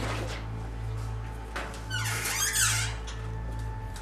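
Background score: a low pulsing drone, with a short cluster of high, squeaky gliding sounds about two seconds in.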